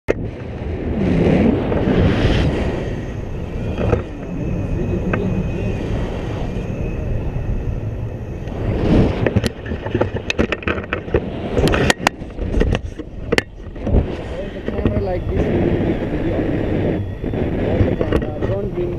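Airflow buffeting the action camera's microphone in flight under a paraglider: a loud, steady wind rumble, with a run of sharp clicks and knocks in the middle.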